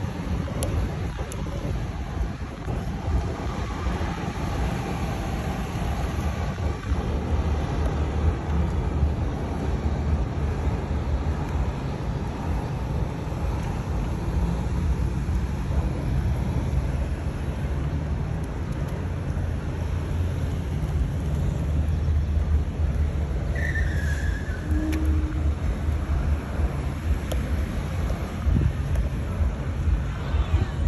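Steady low outdoor rumble, with a brief faint high tone about two-thirds of the way in.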